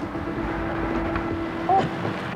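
Low, steady background rumble with a steady hum from the film's soundtrack, with a brief voice sound near the end.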